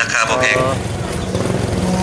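A spoken sales pitch played through a small portable loudspeaker ends, and under it a small engine runs with a low, even pulse from about a second in.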